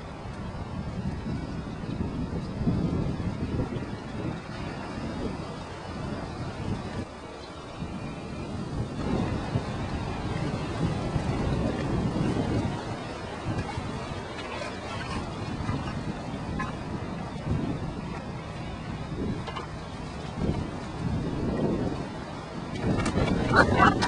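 Wind buffeting the microphone in gusts, a low rumble that swells and fades throughout.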